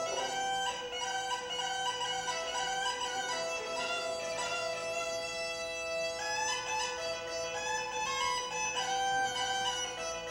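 Greek gaida (goatskin bagpipe) playing a fast, ornamented folk melody over a steady drone.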